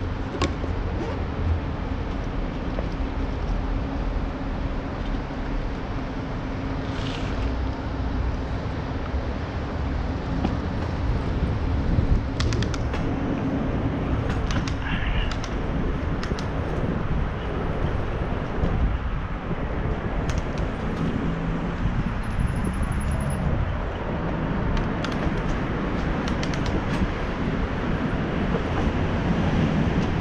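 Steady wind and rolling noise on the microphone of a camera mounted on a moving bicycle, with a few light clicks scattered through it.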